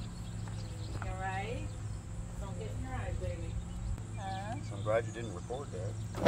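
Faint, indistinct voices in a few short phrases over a low steady hum.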